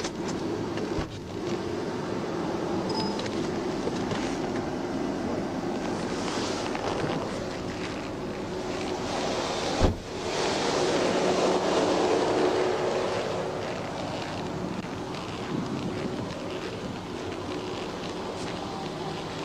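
Steady wind and road noise on a police dashcam microphone at the roadside. A short sharp knock comes just before ten seconds in, followed by a swell of noise for a few seconds as traffic goes by.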